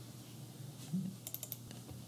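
Faint clicks at a computer's keyboard and mouse: a quick cluster of about four a little after one second in and one more near the end, over quiet room tone, with a short low sound just before the cluster.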